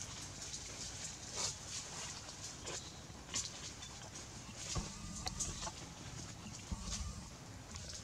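Dry leaves crackling and rustling in short, scattered clicks as macaques shift about on the leaf-strewn ground, with two dull thumps at about five and seven seconds in.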